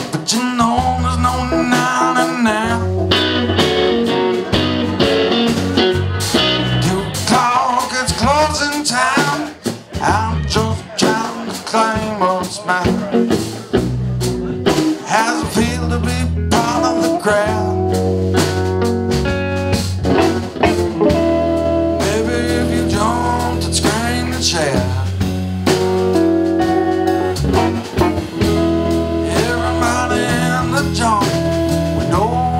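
Live blues-rock jam band playing: two electric guitars, one Stratocaster-style and one Telecaster-style, over bass and drums, with bending guitar lines and a voice singing at times.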